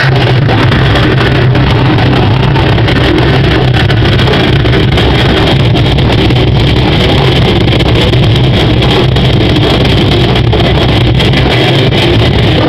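A death/progressive metal band playing live, with distorted guitars, bass and drums, picked up by a small camera's built-in microphone that overloads into a dense, unbroken wall of sound.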